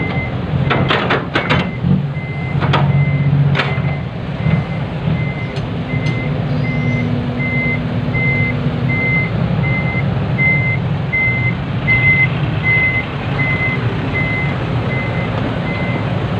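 A dump truck's reversing alarm beeps steadily, about two and a half beeps a second, over its diesel engine running. A few sharp clicks come in the first four seconds.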